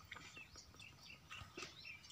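Faint, scattered high chirps of small birds over near silence, with a couple of soft ticks.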